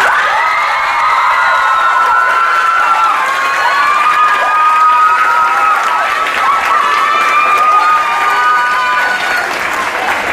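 Audience applauding and cheering, with many shrill, drawn-out shouts and screams riding over the clapping.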